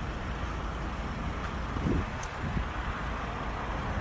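Steady outdoor background noise with a low rumble, like distant road traffic.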